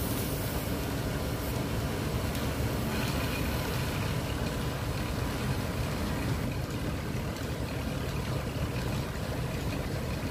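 Wood lathe running steadily with a low motor hum as a large wooden rolling pin turns on it, with a light rubbing hiss from hands smoothing the spinning wood.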